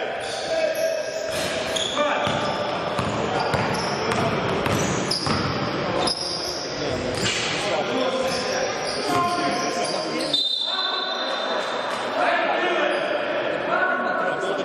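Sounds of a basketball game in a gym: the ball bouncing on the court and players' voices calling and shouting, echoing in the hall.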